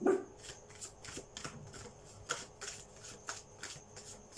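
A deck of tarot cards being shuffled by hand: a run of short, irregular card flicks and taps, with a louder knock right at the start.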